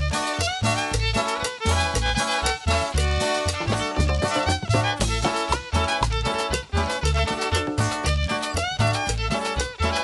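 Chanchona band playing live: bowed violin carrying the melody over plucked upright bass, strummed acoustic guitar and drums, in a steady dance rhythm with no singing.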